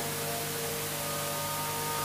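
Steady electrical hum and hiss from a public-address system, with a few faint steady tones under it.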